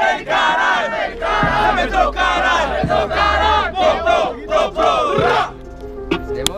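A crowd shouting a chant together, many voices in short rhythmic phrases, that cuts off abruptly about five and a half seconds in.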